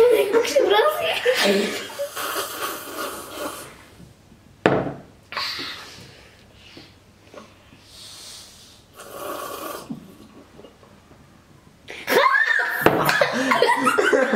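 Girls laughing and giggling, with a single sharp knock about five seconds in and a quieter stretch after it, then loud laughter again near the end.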